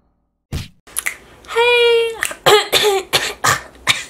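A woman coughing in a fit: a first sharp cough about half a second in, a held high-pitched vocal sound, then a run of quick coughs and throat clearing.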